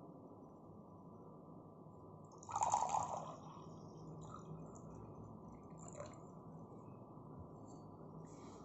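Water poured from above into an empty glass tumbler: a louder splash as the stream first strikes the bottom about two and a half seconds in, then a quieter run of filling that stops with a small click about six seconds in.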